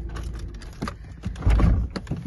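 A few short knocks, then a loud low thump about one and a half seconds in.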